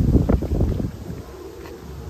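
Wind buffeting the microphone: a loud, irregular low rumble in the first second that then eases off to a steadier, quieter rumble.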